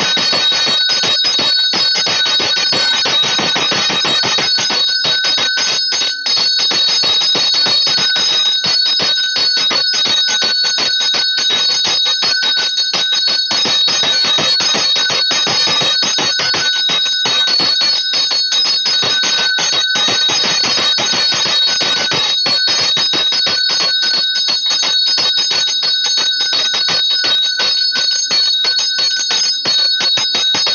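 Temple puja bell rung continuously for an aarti, with very rapid strikes under a steady high metallic ring.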